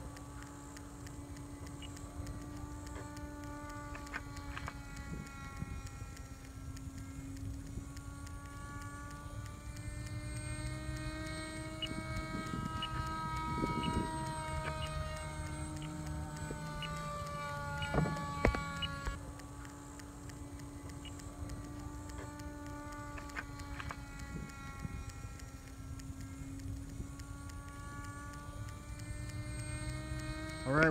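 Radio-controlled flying-wing airplane in flight, its motor and propeller making a steady droning whine of several tones that slowly rise and fall in pitch, getting louder and higher around the middle as it passes. A brief sharp knock comes about two-thirds of the way through.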